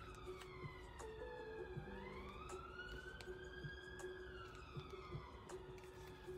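A siren, faint and wailing slowly: its pitch falls, rises again about two seconds in, then falls again near the end. Faint paper clicks from handling a planner sound beneath it.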